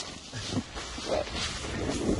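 Jacket fabric and backpack rubbing against the handheld camera's microphone, with wind noise, as a skier sets off down a snowy slope, broken by a couple of short faint sounds.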